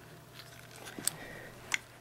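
Quiet room tone with faint handling noise: a light click about a second in and a sharper one near the end.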